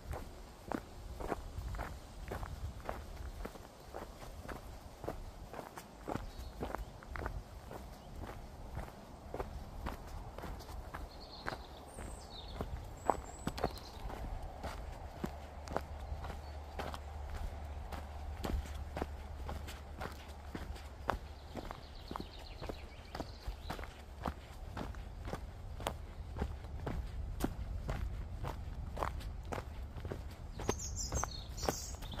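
A hiker's footsteps on a mountain forest trail, a steady walking pace of about two steps a second.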